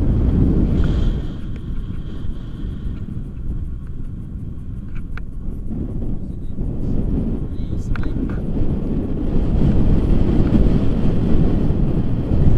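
Wind buffeting the microphone of a camera carried through the air under a paraglider in flight: a steady low rumble that keeps swelling and easing, growing a little louder near the end.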